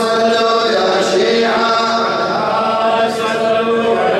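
Melodic chanting of Arabic devotional verse by a male voice, with long held notes and slow glides between pitches.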